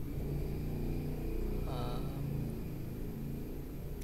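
Low, steady rumble of a running engine, with a brief higher-pitched sound about two seconds in.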